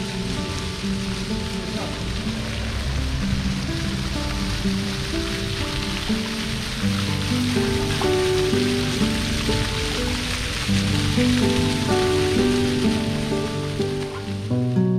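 Background music of held, slowly changing notes over a steady splashing hiss of water from ground-level fountain jets spraying onto paving.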